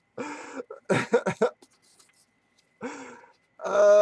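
A man's voice making short breathy outbursts, like coughs or chuckles, in amazed reaction. Near the end comes a loud, long drawn-out exclamation.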